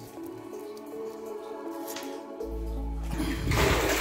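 Background music with soft sustained notes, then a low steady hum about two and a half seconds in, and water splashing loudly near the end as something is plunged into shallow water.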